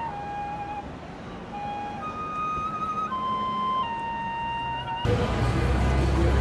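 A flute played by a street musician: a slow melody of long held notes, stepping up and down between pitches. About five seconds in it cuts abruptly to a louder, low-pitched background.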